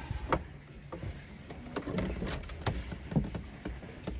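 Loose wiring being handled by hand: a few scattered small clicks and rattles as wires and crimped spade connectors are sorted through.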